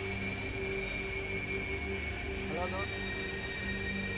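Eerie background music: a steady drone of held tones, with a short wavering pitched sound about two and a half seconds in.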